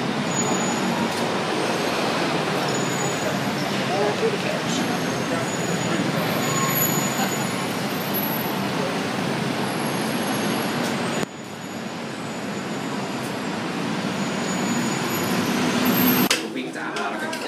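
Steady background traffic noise, an even rumble and hiss. About eleven seconds in it cuts abruptly to a lower level, then builds back up.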